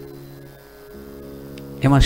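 A steady drone of several held tones, like a sustained chord from an accompanying instrument. Its lower notes shift about a second in.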